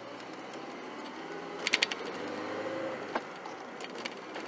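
1995 Ford Ranger's 2.5 L four-cylinder engine, heard from inside the cab, pulling the truck away from a stop and rising in pitch as the revs climb. A brief cluster of clicks comes a little under two seconds in.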